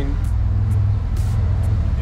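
Steady low rumble of a vehicle engine running nearby, with background music under it.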